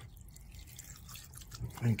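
Liquid poured in a thin stream from a plastic jug into a shallow tub already holding liquid: a faint trickle and splash.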